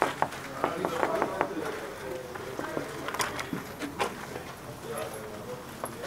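Knuckles knocking several times on a glass door in the first second or so, followed by a few scattered clicks of the door being handled and slid open, over faint background voices.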